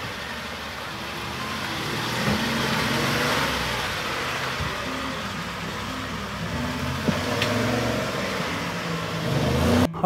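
Ford F-150 pickup's engine revving up and down as the truck climbs a slippery red-clay washout, with a few sharp knocks along the way.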